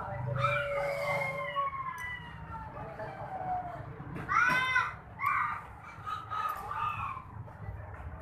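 Rooster crowing: long drawn-out calls that fall in pitch over the first few seconds, then the loudest call about four seconds in, followed by shorter calls.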